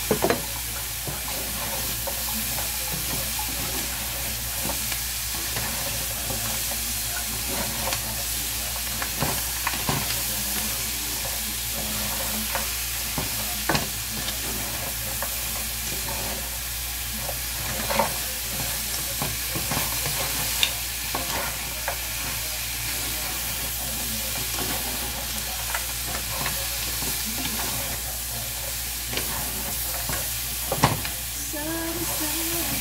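Crab pieces sizzling in a hot frying pan while a wooden spoon stirs and turns them, with a steady hiss and scattered sharp knocks and clicks of shells and spoon against the pan.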